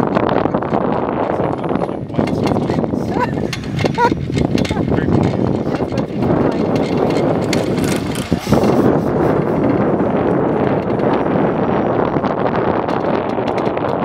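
Steady rushing wind on the microphone from riding an open chairlift, with faint indistinct voices and a few clicks in the first seconds.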